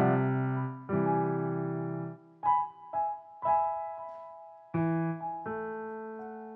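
Grand piano played by a toddler: separate chords pressed one at a time, about seven in six seconds, each left to ring and fade before the next.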